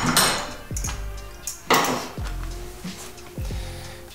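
Steel hand tools clinking and knocking as a socket extension and wrench are worked on the timing-belt sprocket of a Subaru EJ25 engine, with a few separate sharp metallic knocks.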